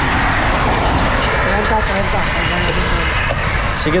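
Steady wind rush over a camera microphone riding along on a road bike at speed, with faint voices in the middle.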